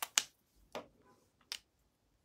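A few sharp clicks as a lipstick tube is handled and capped: the loudest about a quarter second in, then two more near the middle and about a second and a half in.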